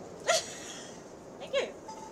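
A woman's short vocal exclamations, twice and about a second apart, the first louder: her reaction to the discomfort of a nasal Covid swab.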